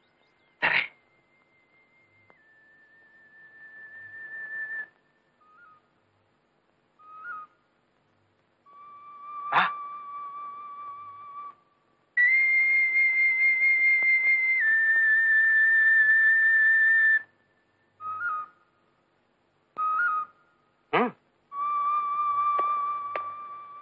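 A slow whistle-like melody of long high held notes with a slight waver. Each note swells in, and the line steps down in pitch. The loudest, breathiest note comes in the middle, and a few short sharp downward-swooping accents punctuate it.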